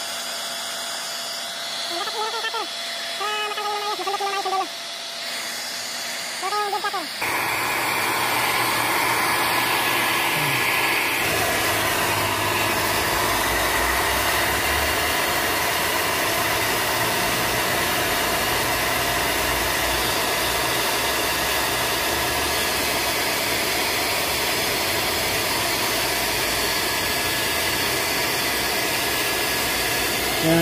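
Handheld hair dryer blowing steadily, heating a vinyl decal to soften its adhesive for peeling. It turns suddenly louder and fuller about seven seconds in.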